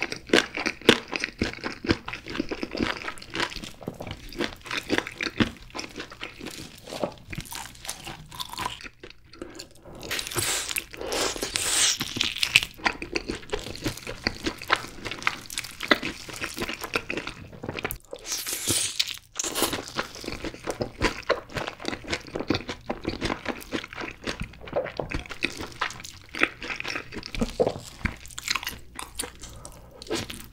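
Close-up crunching and chewing of sauce-glazed Korean fried chicken drumsticks dipped in cheese sauce: crisp bites and wet, sticky chewing run on without a break. The loudest stretch is around ten to thirteen seconds in.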